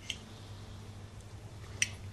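Quiet room tone with a steady low hum, broken by two brief, high clinks of cutlery on a plate: a faint one at the start and a sharper one near the end.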